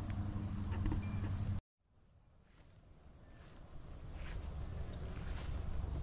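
Insects chirping in a steady, high-pitched, rapidly pulsing drone over a low rumble. About a second and a half in, the sound cuts out completely, then fades back in over the next two seconds.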